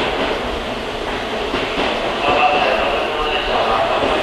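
Kintetsu limited express electric train running slowly along the station platform, its wheels rumbling on the rails, with a high thin squeal from about two seconds in.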